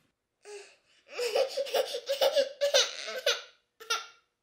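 A feverish one-year-old baby crying in short, broken bursts of high voice after a brief whimper about half a second in, with one more short cry near the end.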